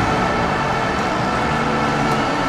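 Motocross bike engine running at a steady pitch.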